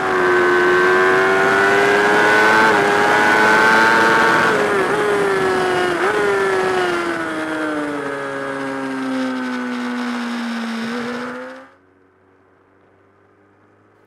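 Sport motorcycle engine at high revs, heard onboard with wind rush. The pitch climbs slightly for the first few seconds, flicks briefly twice, then falls steadily as the bike slows. It cuts off suddenly a couple of seconds before the end, leaving only a faint hum.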